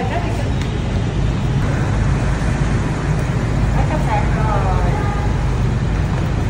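Steady low rumble of motor traffic, with voices talking briefly about four seconds in.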